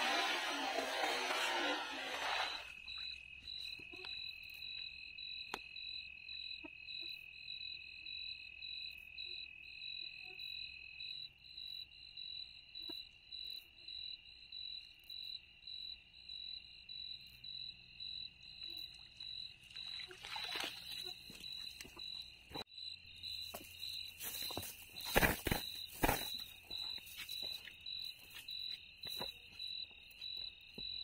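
A cast net landing on the water with a brief spray of splashing, about two seconds long. Night insects then chirp steadily, a high pulsing trill over a second steady tone. Near the end come a short splash and a few sharp knocks as the net is hauled out of the water.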